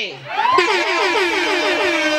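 A woman's ululation, a fast warbling trill at about eight beats a second that settles into one long held note, over clapping from the audience, in answer to a joke at a celebration.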